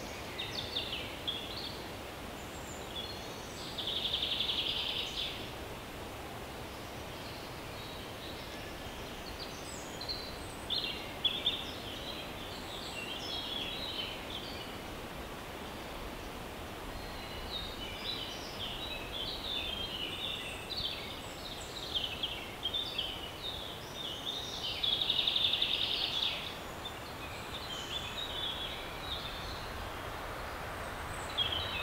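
Forest birdsong: many short chirps and trilled phrases from several small birds over a steady background hiss. A louder buzzy trill lasting about a second and a half comes twice, about four seconds in and again about twenty-five seconds in.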